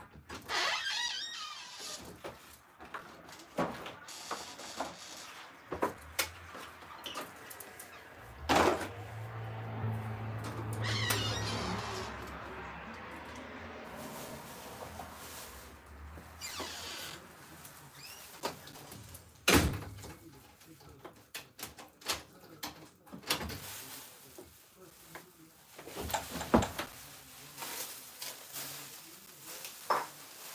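Scattered household knocks and thumps, with a door among them, as someone moves about the room. Three sharp knocks stand out, about a third of the way in, about two-thirds in and near the end.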